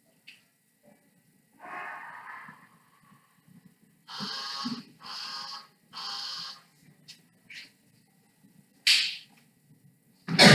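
Dry-erase marker squeaking on a whiteboard in short strokes of about half a second each: one, then a run of three in quick succession, and a brief sharper one near the end.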